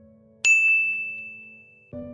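A single bright bell ding from a subscribe-button animation sound effect. It rings out about half a second in and fades away over about a second and a half, over faint background music.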